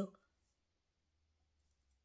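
Near silence in a pause between a woman's sentences, the last of her word trailing off at the very start. A faint low room hum runs underneath, with one faint click about half a second in.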